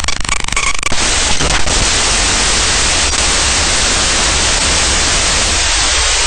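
Loud, steady static hiss like white noise, which takes over about a second in from a short buzzing tone with clicks.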